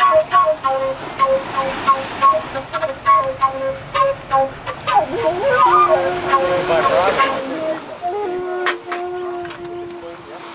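Background music: a melody of held, piping notes over light clicking percussion, with a wavering, sliding passage about five to seven seconds in.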